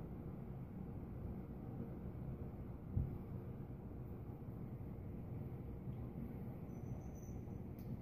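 Quiet room tone with a faint steady low hum. A single soft thump about three seconds in, as a glass of beer is set down on the table.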